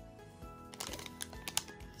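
Background music, with a foil-wrapped Instax Mini film pack crinkling and clicking in the hands from under a second in.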